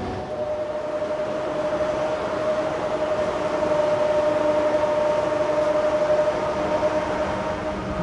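Ship's cargo crane running while lifting a slung load: a steady mechanical whine with one clear held tone over a noisy drone, swelling slightly midway and fading near the end.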